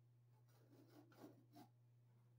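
Faint scraping and rasping of a hand tool cutting a round hole in a drop-ceiling tile: a few short strokes about a second in, over a low steady hum.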